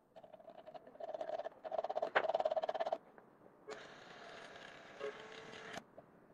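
Handmade analog voice recorder running: a faint scratchy rattle that grows louder over about three seconds, then a steady hiss for about two seconds.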